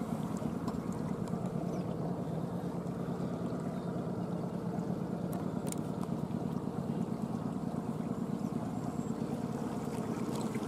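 Outboard motor of a small inflatable boat running steadily underway, an even hum with no change in speed.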